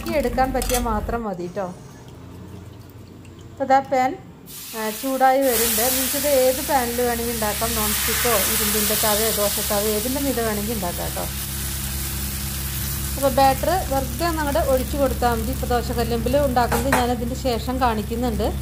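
Thin rice-flour dosa batter hitting a hot iron dosa pan about five seconds in and sizzling steadily. The sizzle is loudest for the first few seconds and then eases to a lower, continuous frying hiss.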